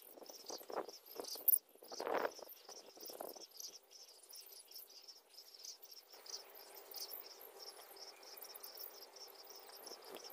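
Continuous high, rapidly pulsing chirping of crickets, with scratchy rustling bursts in the first three seconds and a faint steady hum in the second half.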